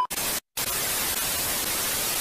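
TV-static white-noise sound effect, a steady hiss spread across the whole range, used as a no-signal glitch transition. It drops out briefly about half a second in, then carries on evenly.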